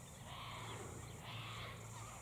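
Quiet outdoor background: a faint steady low hum under a soft hiss, with no distinct sound standing out.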